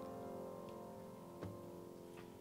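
The final chord of a hymn on piano and acoustic guitar ringing out and fading away, with one small knock about a second and a half in.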